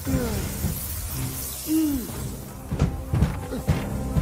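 Film soundtrack effects of shattering and crashing, with several sharp impacts in the second half, mixed with music from the score. Falling swooping tones come near the start and again near the middle.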